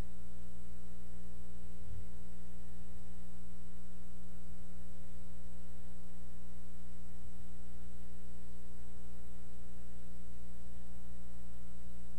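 Steady electrical mains hum with buzzing overtones and a faint high-pitched whine, with a brief low thump about two seconds in.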